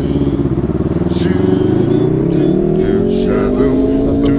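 Motorbike engine running under way, its pitch rising steadily through the second half as it accelerates.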